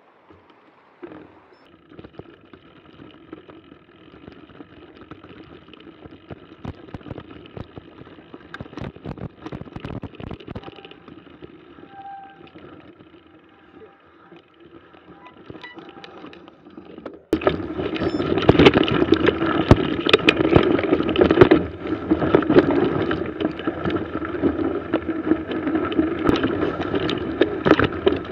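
Mountain bike rolling over a snowy trail, rattling and knocking. The first part is fairly quiet, with scattered clicks. About two-thirds of the way in it turns suddenly much louder, a dense rattle and rumble of the bike on the move.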